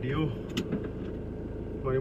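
Car engine idling, heard from inside the cabin as a steady low hum, with a single sharp click about half a second in.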